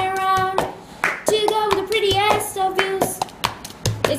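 Cup-game rhythm: hand claps and a disposable cup being tapped and slapped down on a tabletop in a quick pattern of sharp knocks. A young woman sings the melody over it in a small room.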